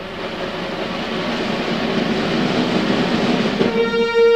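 Symphony orchestra playing a dense, hissing wash of sound that swells steadily louder, with no clear pitch. Near the end a held brass note comes in.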